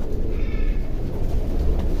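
Pigeon loft ambience: a steady low rumble, with one short, high-pitched mewing call about half a second in.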